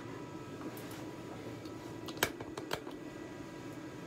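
Steady hum of a ventilation fan, with a few light clicks over it, the sharpest just past two seconds in.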